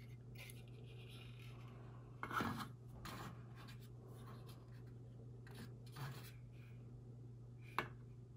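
Faint rubbing and handling of plastic model rocket parts as the thrust structure with its fuel tunnels is turned in the hands, with a few light clicks and knocks, the sharpest just before the end.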